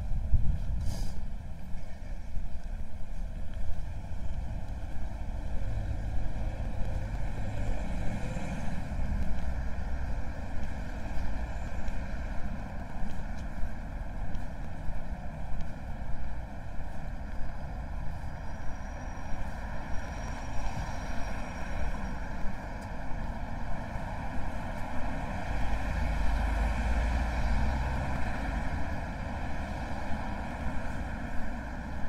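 Street traffic ambience: cars passing on the road beside the pavement, with a stronger low rumble of a vehicle going by near the end.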